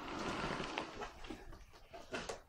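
Handling noise: a short rustle at the start, then fainter scuffs and a couple of light clicks as things are moved about by hand.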